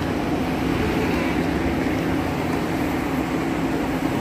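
The inflatable air dancer's electric blower fan runs steadily, a constant hum over a rush of air.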